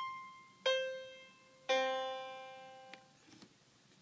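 Synthesized piano notes from a GarageBand piano voice, triggered by an Arduino push-button MIDI keyboard. The same key steps down by octaves: a high note fades at the start, a note an octave lower strikes about two-thirds of a second in, and one a further octave down a little before two seconds in rings out slowly. A small click follows near three seconds.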